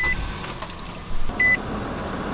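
Car's dashboard chime beeping twice, once at the start and again about a second and a half in, as the engine is started and settles to idle.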